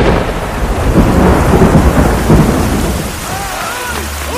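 Thunderstorm sound effect: a steady hiss of heavy rain with thunder rumbling, easing off a little in the last second.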